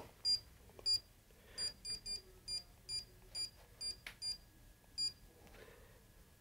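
Panasonic Aquarea H Generation heat pump wall controller giving a short, high-pitched key beep at each button press: about eleven beeps at uneven intervals as the timer's hour setting is stepped through.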